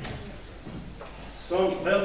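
A pause in a man's speech in a hall, with only faint room noise, then his voice resumes about one and a half seconds in.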